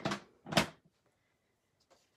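Plastic ink pad cases being slid across a tabletop and set down: two short scrapes, the second and louder about half a second in.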